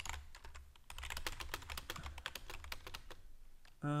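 Rapid typing on a computer keyboard: a quick, uneven run of key clicks.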